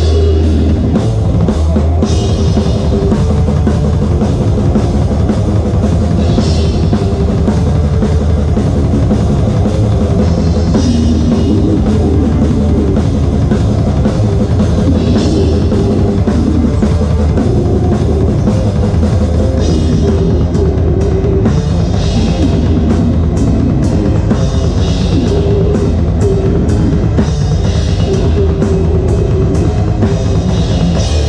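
Death metal drum kit played live at close range, loudest over the rest of the band, with the kick drums dense and steady. Cymbal crashes ring out every few seconds and come thick and fast over the last third.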